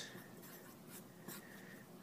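Felt-tip marker writing on paper: a few faint, short strokes as a short expression is written out.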